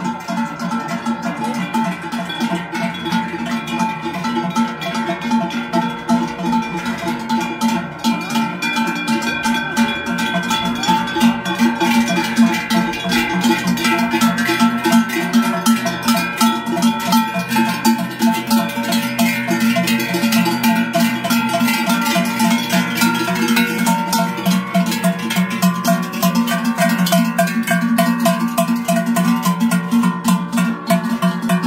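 Large cowbells on a procession of walking cows ringing continuously, many bells at once swinging with the animals' steps, getting louder from about ten seconds in as the cows come close.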